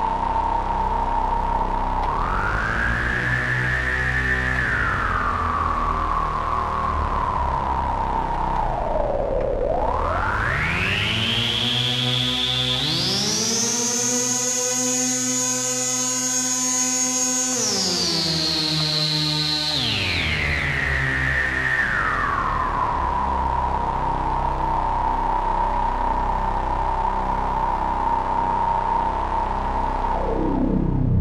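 Synthesizer patch through a GSE XaVCF, an OB-Xa-style AS3320 resonant lowpass filter in 4-pole mode, with resonance turned high so the filter's peak sings as a whistling tone over low sustained synth notes. The peak holds steady, rises a little and falls back, dips low about nine seconds in, then sweeps far up over a few seconds. It holds there, steps back down over the following seconds and settles at its starting pitch.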